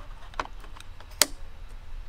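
Plastic clicks of a bike computer being fitted onto an out-front handlebar mount: a light click about half a second in, then a sharp click just past a second as the unit seats in the mount.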